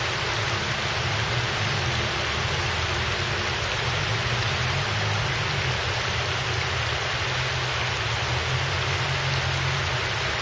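Shallow river water running over a broad shelf of flat rocks: a steady rushing hiss with a low rumble beneath, unchanging throughout.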